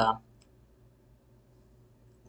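The last syllable of a man's voice, then near silence with one faint computer mouse click about half a second in.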